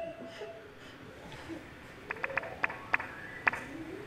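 Faint electronic sound from a laser-tracking light art installation: several short, quick pitched blips in the second half over a low background.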